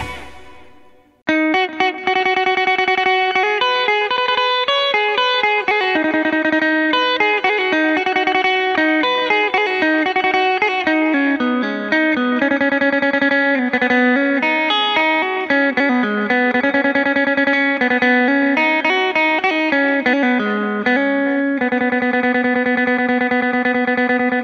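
Instrumental intro of a mor lam song: an amplified, effects-processed plucked string instrument plays a fast, rapidly picked melody. The previous track cuts off at the start, and the new one comes in after about a second of silence.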